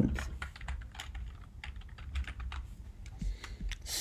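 Typing on a computer keyboard: irregular keystroke clicks, a quick run in the first second or so, sparser after, and a few more near the end.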